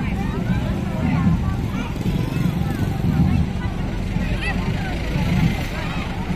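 Crowd babble of many children's and adults' voices talking over one another, with motorcycle engines running underneath as a steady low rumble.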